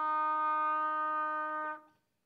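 Solo trumpet holding one long, steady note, which dies away shortly before the end.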